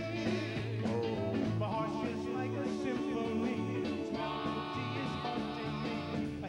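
Doo-wop vocal group singing in harmony with a live rock-and-roll backing band of electric guitar, bass and drums, in a steady mid-tempo groove.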